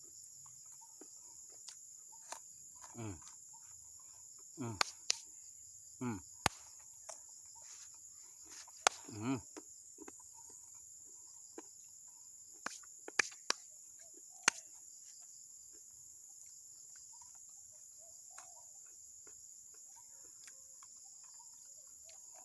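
Steady high-pitched insect chorus, like crickets in grass, with a man's short falling 'mmm' hums a few times in the first ten seconds and scattered sharp clicks.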